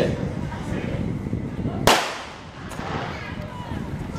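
Starter's gun fired once to start a 400 m race: a single sharp crack about two seconds in.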